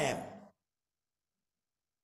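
A man's voice trailing off at the end of a word in the first half second, then dead silence.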